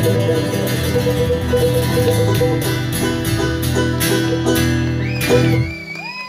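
Acoustic string band of banjo, strummed acoustic guitars and electric guitar playing the instrumental close of a song, ending on a final chord about five and a half seconds in. A whistle with rising and falling pitch starts just before the music stops.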